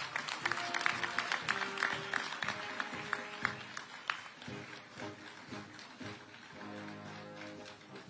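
Light applause from an audience over soft instrumental background music with held notes; the clapping thins out after about four seconds, leaving mostly the music.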